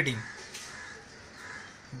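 A man's voice trails off at the end of a word, then a pause of faint background noise.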